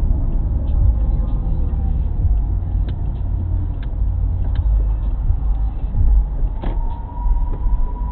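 Car driving slowly on a city street, heard inside the cabin: a steady low rumble of engine and tyre noise, with faint scattered clicks and a thin high whine that comes in with a knock near the end.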